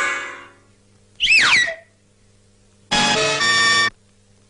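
Cartoon soundtrack music effects in three separate strokes: a struck chord that rings and fades, a wobbling whistle-like tone that slides downward, then a short held chord that cuts off suddenly near the end.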